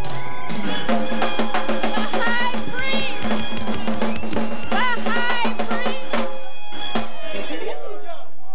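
Live rocksteady band playing: drum kit with snare and rimshots over a steady bass line, guitar and a voice on top. The band stops about seven seconds in with a final hit.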